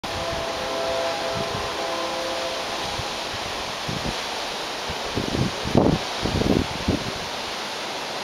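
Steady rushing of a tall waterfall, with low buffeting on the microphone between about five and seven seconds in.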